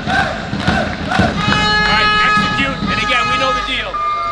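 A group of young male voices shouting together in short, loud bursts, about three a second, then background music with long held tones comes in about a second and a half in, with voices continuing over it.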